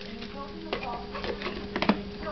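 Small dogs chewing meaty treats: a few sharp clicks and smacks, the loudest cluster near the end, over a steady low hum.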